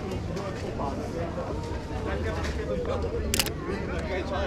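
Crowd chatter of a busy street market, with one sharp click of a DSLR's shutter, a Canon 5D Mark IV, a little over three seconds in.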